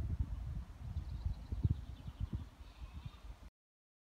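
Wind buffeting the microphone in uneven low gusts, with faint sheep bleating in the distance about a second in and again near the end. The sound cuts off suddenly about three and a half seconds in.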